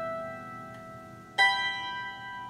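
Two banduras, Ukrainian plucked string instruments, played as a duet: a plucked note rings and fades, then a new, louder plucked chord strikes about a second and a half in and rings on.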